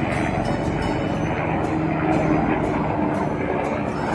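Helicopter engine and rotor noise, a steady mechanical rumble.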